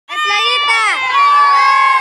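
A group of children shouting together in a loud, long-held cheer, several voices overlapping.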